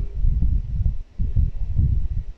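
Low, irregular rumbling and bumping noise on the microphone, with no voice.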